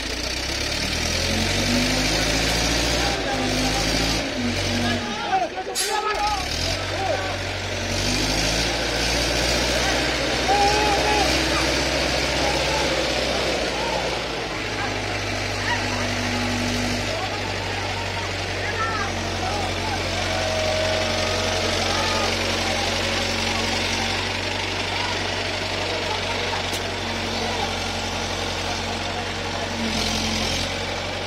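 A crane's engine hoisting an elephant in a sling. Over the first several seconds its pitch rises and falls as the load is worked, then it settles to a steady run.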